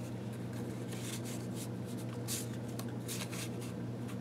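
Old paper being handled: soft, brief rustles and rubs as small cards and photos are shifted and pressed into a handmade journal, over a steady low hum.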